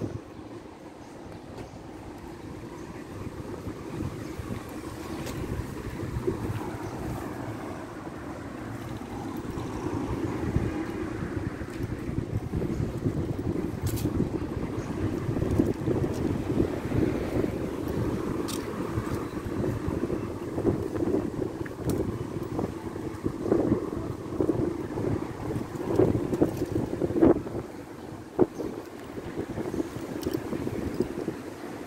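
Wind buffeting the microphone, a steady low rumble that grows louder about ten seconds in, over faint street traffic, with a few short knocks near the end.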